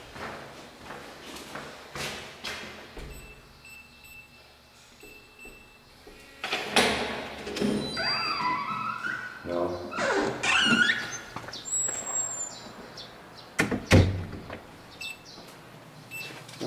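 Indoor handling noises: scattered knocks and thuds, a few faint short electronic beeps about four to five seconds in, pitched gliding sounds from about seven to eleven seconds in, and one loud thunk about fourteen seconds in.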